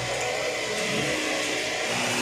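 Industrial sewing machines running together in a garment workshop, a steady mechanical whirr with a low hum underneath.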